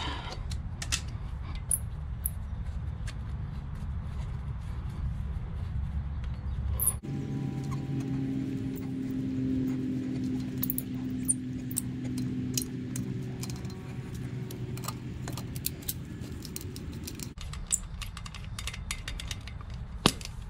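Small metallic clicks and rattles of tire inflation hose fittings being unscrewed by hand from a semi-trailer wheel end. They sound over a steady low hum that changes in tone about seven seconds in and again near the end.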